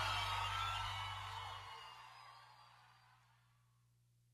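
Final sustained chord of a live gospel band ringing out and fading away, gone to silence about three seconds in.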